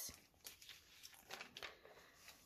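Faint rustle of a glossy paper magazine page being turned by hand, a few soft crinkles around the middle.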